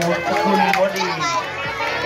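Children's voices chattering and calling out over one another, with one lower voice among them.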